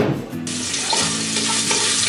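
Meat sizzling as it fries in a pressure-cooker pot on a gas stove, stirred with a wooden spoon. The sizzling starts suddenly about half a second in and then holds steady.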